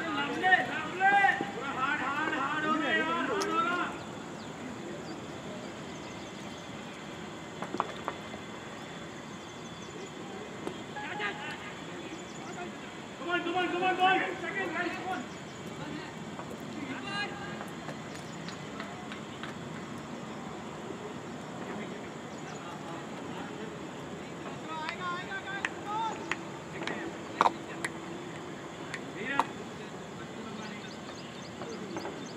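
Cricket players' voices calling out across the field in short bursts, heard a few times over a steady background hiss, with a few brief sharp knocks.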